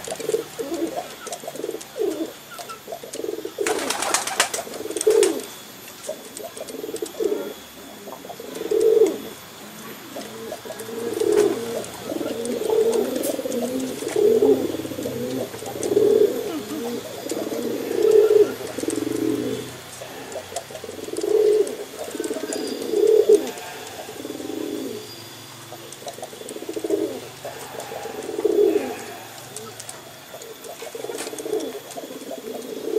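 Male domestic pigeon courtship-cooing at a hen: a low coo repeated every couple of seconds. A brief rustle about four seconds in.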